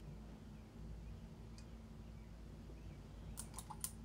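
Quiet steady low hum of the room, with one faint click early and a quick run of four or five light clicks near the end, from a brush and a small plastic paint bottle being handled while painting.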